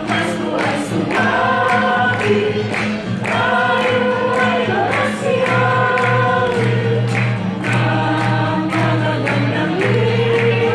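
A small choir singing a song together to strummed acoustic guitar, with a steady beat running under the held sung notes.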